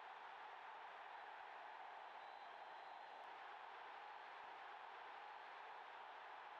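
Near silence: a faint, steady background hiss with no distinct sound events.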